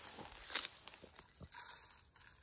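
Faint rustle of loose, dry, seed-like carrier material being poured from a small plastic cup into a cardboard box. A brief rustle comes about half a second in, followed by a few light clicks.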